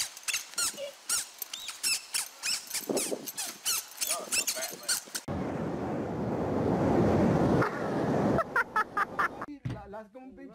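Short high squeaks repeating rapidly, several a second, for about five seconds. Then a steady rushing noise of ocean surf for about three seconds, followed by a few more squeaks.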